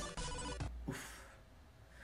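A phone ringtone playing a short electronic tune that fades away over the first second or so. A short breathy "uf" comes near the end of it.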